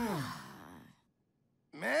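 A cartoon character's sigh of being overfull from eating too much pizza, falling in pitch and fading out within the first second over the tail of a music sting. Then a short silence, and a man's voice starts near the end.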